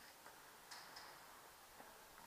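Near silence, broken by a few faint, short clicks, about five of them spread unevenly through the two seconds.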